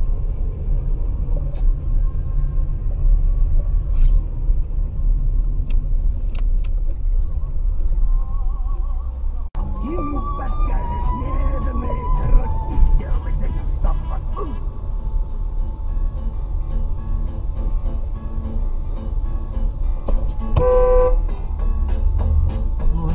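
Dashcam recording of road traffic: a steady low engine and road rumble that breaks off abruptly about halfway in, with a car horn sounding briefly near the end.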